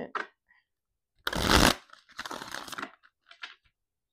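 A deck of tarot cards being shuffled by hand: a loud, brief rush of cards about a second in, then a softer, longer shuffle, and a few faint card sounds near the end.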